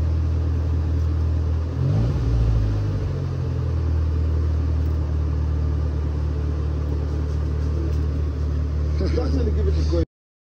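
Toyota Glanza EP91 engine idling steadily, with a short rev about two seconds in.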